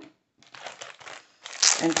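Clear plastic wrapping crinkling as it is handled around a boxed binder. It starts about half a second in and grows louder near the end.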